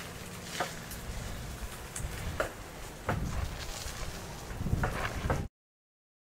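Bicycles being handled and ridden off: scattered light clicks and knocks over a steady low background noise. The sound cuts off suddenly about five and a half seconds in.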